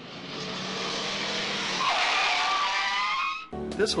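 Car sound effect: a rush of passing-car noise that builds up, then tyres squealing from about two seconds in, cutting off suddenly shortly before the end.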